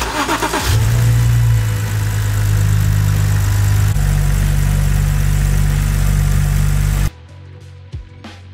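Car engine cranked by the starter, catching within about a second and settling into a steady idle, then cut off suddenly near the end. This is the start-up that lets the engine run to dry the engine bay after washing.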